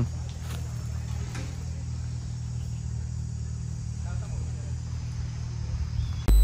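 Outdoor ambience with a steady low rumble, and a faint voice heard briefly about four seconds in.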